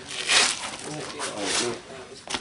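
A man's voice speaking a few words, with a brief hissing noise about a third of a second in.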